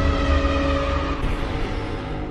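Logo intro sound effect: a deep rumble with a few held tones, which stop about a second in while the rumble slowly fades.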